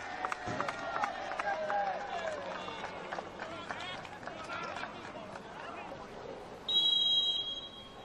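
Players shouting on a football pitch, dying down to field ambience, then a single referee's whistle blast of about a second near the end.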